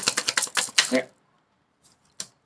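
A deck of oracle cards being shuffled by hand: a rapid clatter of card edges for about a second, which then stops.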